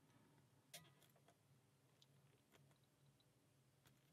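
Near silence broken by a few faint, sparse clicks of a lock pick working the pin stack of a brass five-pin padlock under a tension wrench; the clearest click comes about three-quarters of a second in.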